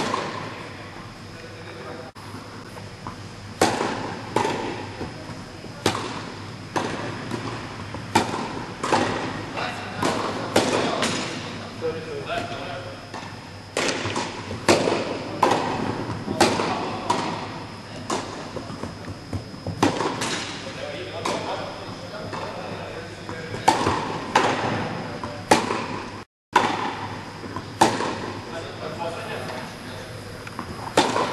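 Tennis balls struck by rackets and bouncing on an indoor court during a baseline rally drill: a rapid, uneven series of sharp hits and bounces, each with a short echo from the hall.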